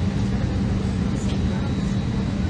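Steady cabin drone of an Airbus A321 parked before takeoff: the air-conditioning and ventilation airflow with a constant low hum.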